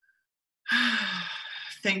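A woman sighing: one breathy exhale with a falling voice, about a second long, starting just under a second in.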